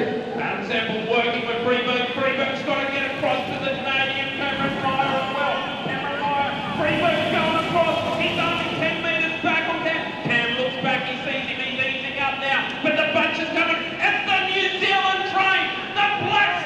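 Speech: a race commentator talking continuously, the words not picked up by the transcript.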